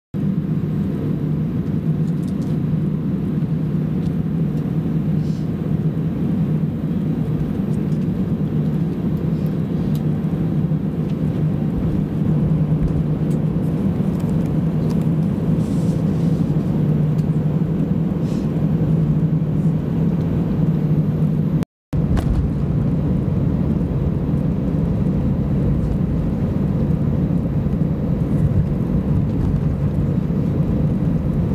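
Cabin noise of an Airbus A320-200 taxiing: a steady low drone from the idling jet engines and the rolling airframe, with a strong low hum. The sound cuts out completely for a moment about two-thirds of the way through.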